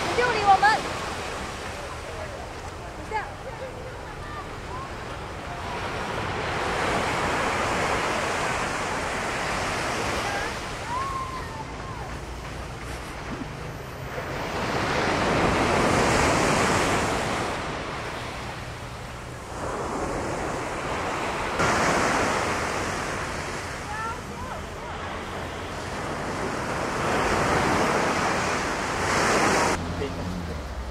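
Sea surf breaking and washing up a sandy shore, a steady noise that swells and falls back in slow surges about every six seconds.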